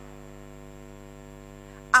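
Steady electrical hum of several level tones from the sound system, unchanging until a voice begins right at the end.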